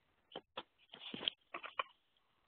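Handling noise from plugging in a laptop's power cord: a few short clicks and knocks, a brief rustle about a second in, and a quick run of clicks near the end.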